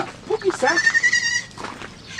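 A goat bleats once in the background, a single high call lasting under a second with a wavering quality, just after a man says a short word.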